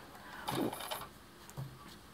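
Quiet handling at a sewing machine: fingers working the thread at the bobbin cover, with a brief soft scrape or rustle about half a second in and a fainter sound near the end.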